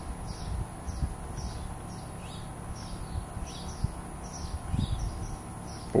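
A small bird calling over and over, short falling chirps about two a second, over a low background rumble.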